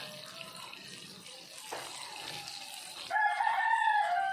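Chicken pieces deep-frying in palm oil, the oil sizzling with a steady hiss. About three seconds in, a rooster crows, one long call that carries on past the end.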